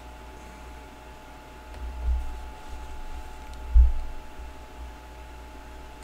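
Quiet room tone with a steady faint hum, broken by two low bumps about two seconds and four seconds in, the second the louder, and a faint click or two.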